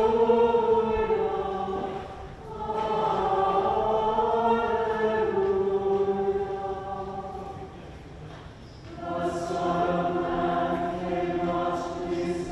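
Church choir singing a slow, sustained piece in long phrases. There is a short break about two seconds in and a longer pause for breath around eight seconds in, before the voices come back in.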